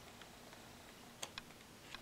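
Near silence: faint room tone with a few soft ticks of paper pages being handled, two of them close together a little past the middle.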